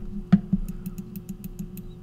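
Computer mouse clicking in a quick, even run of faint clicks, several a second, with one sharper click about a third of a second in, over a steady low hum.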